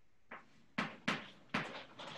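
Chalk writing on a blackboard: four sharp taps spaced roughly a third of a second apart, the last one drawn out into a short scratch.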